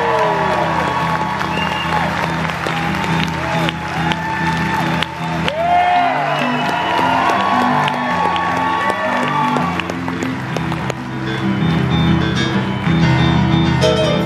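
Live rock and roll band playing a steady, driving bass line on electric bass, with a singer's voice over it and the audience cheering, whooping and clapping.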